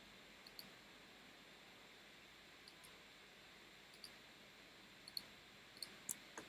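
Faint computer mouse clicks over low hiss: about ten short, sharp clicks at irregular spacing, bunched more thickly near the end, as anchor points are set with Photoshop's pen tool.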